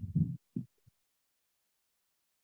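Two or three brief, muffled low thumps in the first half-second, then dead silence.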